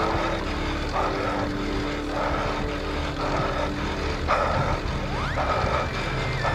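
Steady low wind and road rumble from a road bicycle being ridden. A short hiss repeats about once a second over it.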